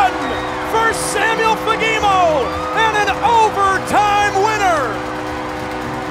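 Ice hockey arena goal celebration: a loud crowd cheering over a long, steady multi-tone goal horn chord, with drawn-out excited shouting over the top.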